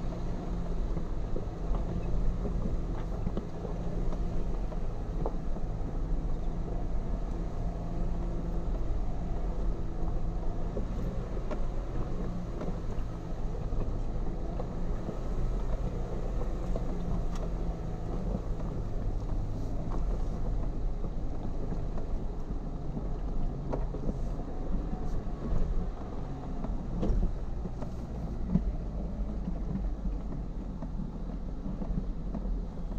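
Jeep Wrangler Rubicon's engine running steadily at a low crawl on a rocky gravel trail descent, with a low hum and a few light knocks from the tires and suspension over stones.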